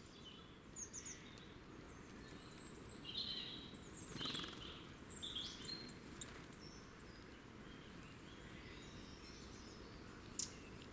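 Small woodland songbirds giving short, high chirps and calls, clustered in the first six seconds and loudest around the middle, over a steady low background noise. The sound is faint overall.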